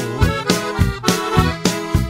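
Norteño music: an accordion playing a melody over a steady bass and drum beat, with no singing.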